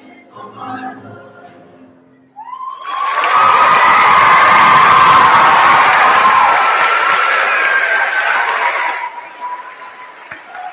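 A choir's last sung notes fade out, then a couple of seconds in the audience breaks into loud applause with cheering and high shouts. The applause dies down about a second before the end.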